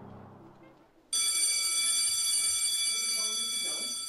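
Brass music fades out. About a second in, a loud, steady electronic ringing tone starts suddenly and holds.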